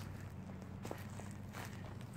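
Footsteps of someone walking, a few soft steps between about one and one and a half seconds in, over a steady low hum.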